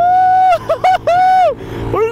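A man's high-pitched, wordless vocal cries: two long drawn-out ones with short yelps between them. Under them is the steady noise of the Royal Enfield Himalayan's 411 cc single-cylinder engine held near the red line at full throttle, with wind.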